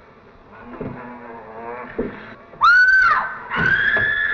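A woman screaming in terror: a short shriek that rises and falls nearly three seconds in, then a long held scream starting about half a second later. Low growling comes before the screams.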